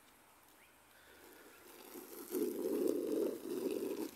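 Small plastic skateboard's wheels rolling over asphalt: a rough rumble that builds from about a second in and is loudest over the last two seconds.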